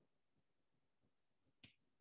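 Near silence, with one faint, short click about one and a half seconds in.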